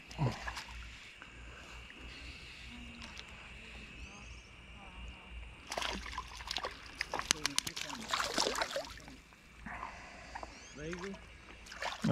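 Water splashing and sloshing in a cluster of quick splashes in the middle, from a small hooked rainbow trout thrashing at the surface as it is drawn in on a fly line.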